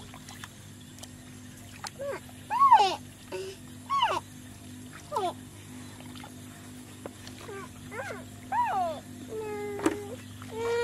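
An animal's cries: short whining calls that rise and fall in pitch, about nine of them at uneven gaps, ending in a longer, steadier whine near the end.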